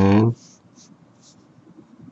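A short, loud held vocal sound at the very start, then a pen writing on paper in a few faint short scratches.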